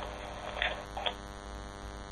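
Steady electrical hum on a telephone conference-call line, with two faint, brief noises about half a second and a second in.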